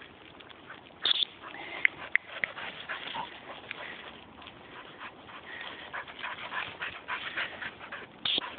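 Dry dead bracken rustling and crackling as a springer spaniel and a walker push through it, with a few brief high whimpers from the dog about two seconds in.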